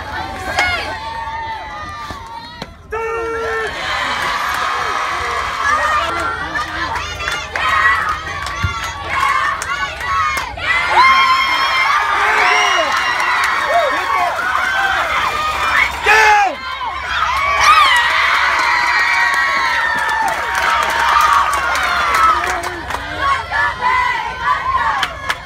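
A crowd of girls cheering and shouting together in high voices, breaking off sharply a few times and starting again.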